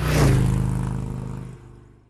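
A title-card sound effect: a sudden hit with a rush of noise over a low hum, fading away over nearly two seconds.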